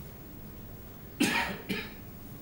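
A man coughing twice: a louder cough a little past halfway and a smaller one about half a second later.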